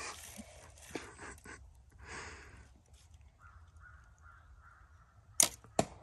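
Youth compound bow at full draw, then fired with a back-tension release near the end: a sharp snap as the string is loosed, followed a moment later by a second, quieter snap.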